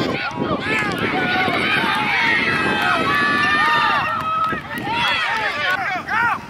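Many spectators yelling and cheering at once, their voices overlapping, with long drawn-out shouts in the middle.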